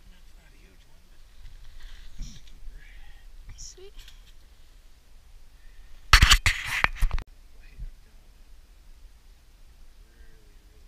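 Faint low voices, then about six seconds in a loud burst of rustling lasting about a second: coat fabric rubbing against the chest-worn camera as its wearer moves.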